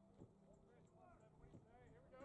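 Near silence: faint, distant voices talking over a steady low hum, with a few soft knocks.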